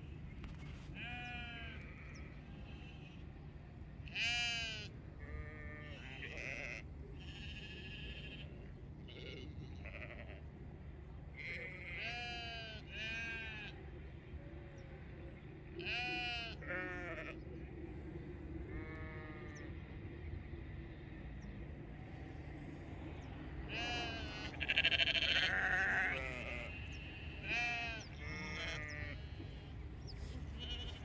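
A flock of sheep bleating: many wavering calls, one after another, from several animals, loudest near the end where calls overlap, over a steady low rumble.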